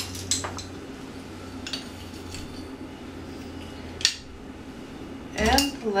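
Light clinks and taps of a spoon and salt container against a mixing bowl as salt is added to flour, with one sharper tap about four seconds in. A voice starts speaking near the end.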